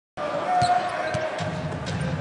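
Arena crowd noise in a basketball game, with a few sharp knocks of the ball being dribbled on the hardwood court and a short squeak about half a second in.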